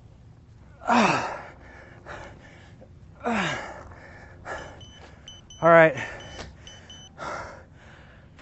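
A man's forced exhales on each wood-chop swing of a weight, about every two to three seconds. One, near the middle, is a louder voiced grunt falling in pitch. A run of short electronic beeps sounds across the middle.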